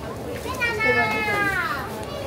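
A child's high voice giving one long drawn-out call of about a second and a half that slides down in pitch at the end, over the chatter of a shopping crowd.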